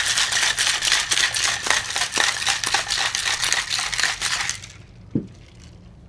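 Ice rattling rapidly inside a metal cocktail shaker as a martini is shaken hard, stopping about four and a half seconds in, followed by a single short knock.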